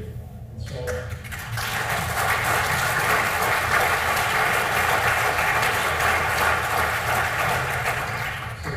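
Audience applauding in a hall, swelling about a second in, holding steady and easing off near the end.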